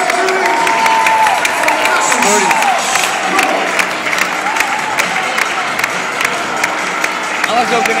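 Arena crowd cheering and clapping, many voices shouting at once with sharp hand claps throughout.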